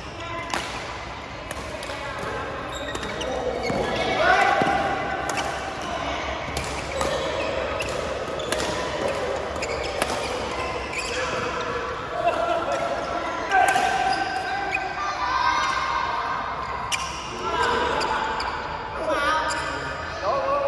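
Badminton rackets striking a shuttlecock in a doubles rally: a run of sharp hits about a second apart, ringing in a large hall.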